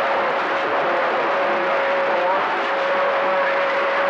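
CB radio receiver on channel 28 hissing with open band noise between transmissions, with a steady single-pitch whistle running under the hiss, the beat of another station's carrier.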